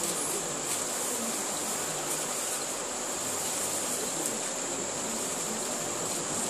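Steady, high-pitched chorus of insects, likely crickets, with a few faint rustles of Bible pages being turned.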